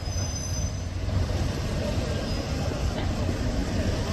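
Steady low rumble of city street traffic with a tram running on curved track; a brief thin, high wheel squeal from the tram sounds at the very beginning and fades within the first second.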